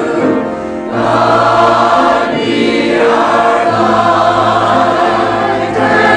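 Mixed church choir of men and women singing sustained chords, with a brief dip in loudness just under a second in.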